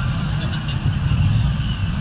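Steady low rumble of street traffic, with faint voices in the background.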